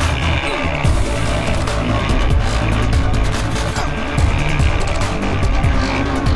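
Music with a driving beat, with off-road motorcycle engines revving under it.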